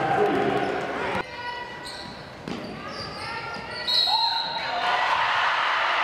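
Game sound in a gymnasium during a basketball game: crowd voices and a basketball bouncing, in a large echoing hall. About a second in the sound cuts abruptly to a quieter stretch with short high squeaks, and near the end the crowd noise returns.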